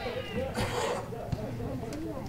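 A high-pitched shout on a football pitch tails off at the start, followed by faint shouts and calls from across the pitch.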